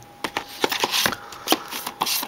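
Plastic DVD cases clicking and scraping against each other and the shelf as one case is slid back in and the next is pulled out: a quick string of light clicks with some rustling.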